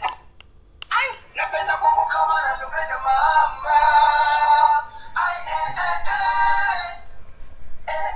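Dancing cactus toy playing a song through its small built-in speaker: sped-up, synthetic-sounding singing with a thin, tinny tone. After a short gap there is a click a little under a second in, the song starts, and it breaks off briefly near the end.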